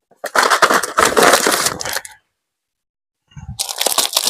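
A clear plastic packet crinkling and crackling as it is gripped and moved by hand. The crinkling lasts about two seconds, stops, and starts again near the end.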